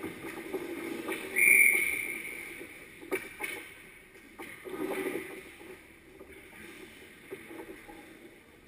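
Referee's whistle blown once about a second and a half in, a single steady blast of about half a second that signals a stoppage in play. Around it, skates scraping on the ice and a few sharp stick or puck knocks.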